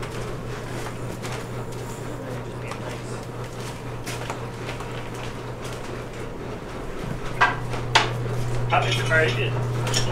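A steady low electrical hum that gets louder about seven seconds in. Two sharp knocks come shortly after, and a few words are spoken near the end.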